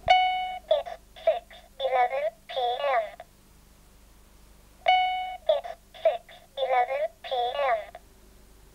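Talking clock announcing the time in a robotic synthesised voice, each announcement preceded by a short steady beep. The beep and the same announcement play twice, about five seconds apart.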